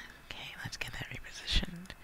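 A man whispering, with breathy mouth sounds and a few clicks, and a short voiced sound about one and a half seconds in.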